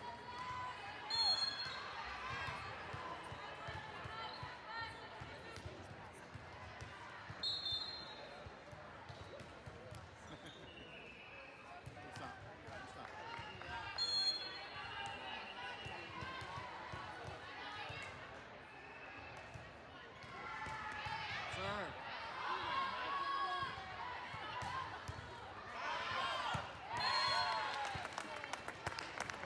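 Indoor volleyball gym sound: players' and spectators' voices over hall echo, with sharp ball contacts and short high referee-whistle blasts about a second in, around seven seconds and around fourteen seconds. Voices rise into shouts near the end as a point is won.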